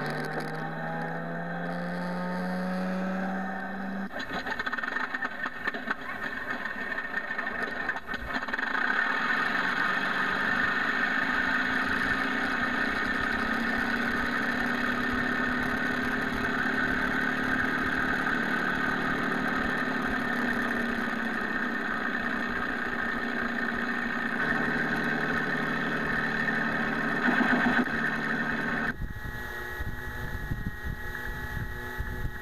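Onboard Mr. RC Sound V4.1 sound system playing a simulated P-51 Mustang engine start through the model's external speakers: a rising starter whine for the first few seconds, then the engine sound catches and runs steadily at idle, dropping away near the end.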